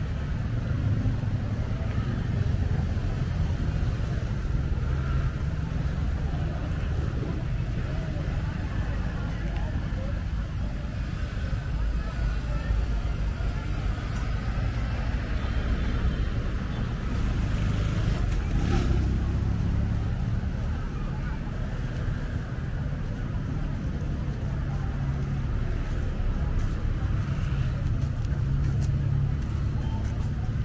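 Street traffic on a seafront road: a steady low rumble of cars and motorbikes passing, with a brief sharper sound about two-thirds of the way through.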